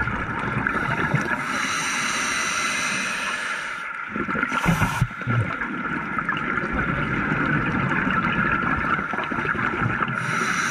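Scuba diver's regulator breathing heard underwater: a steady hiss, with a short burst of exhaled bubbles gurgling about halfway through.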